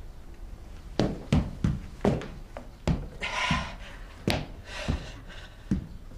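A series of about eight irregular thuds and knocks, spaced unevenly, with two short hissing sounds between them.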